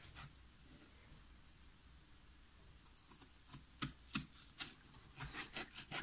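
Small kitchen knife slicing strawberries on a plastic cutting board: several faint, sharp taps of the blade on the board in the second half, after a quiet stretch.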